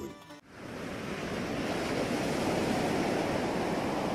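Ocean surf: a steady rush of sea waves that fades in within the first second and then holds evenly.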